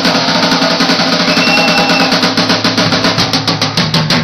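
A punk rock band playing live: a drum kit with cymbals beating a fast, even rhythm under electric bass and electric guitar, heard close to the drums.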